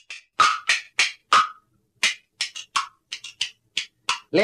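Wooden kuaiban clappers clacked together about a dozen times in an uneven, syncopated rhythm, each sharp clack with a brief woody ring.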